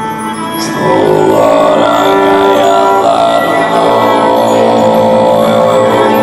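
Live band playing with many held notes, stepping up to full, louder playing about a second in.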